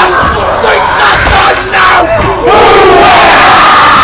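A large group of teenage boys chanting a haka in unison: loud, forceful shouted chant, with low thuds under the voices.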